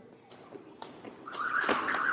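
Jump rope slapping the rubber gym floor, a series of light sharp slaps as the skipping gets going. A voice comes in during the second half.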